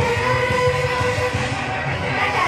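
Upbeat Japanese idol pop song with a steady beat, played for a live dance performance; a held note runs through most of the two seconds.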